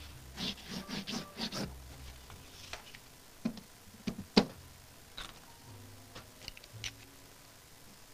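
Fine-tip Pigma Micron ink pen scratching on watercolor paper in a quick run of short hatching strokes over the first two seconds, followed by a few scattered light taps and knocks, the sharpest about four and a half seconds in.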